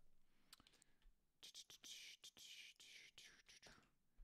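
Very faint typing on a computer keyboard: scattered soft keystroke clicks, with a faint breath-like hiss for about two seconds in the middle.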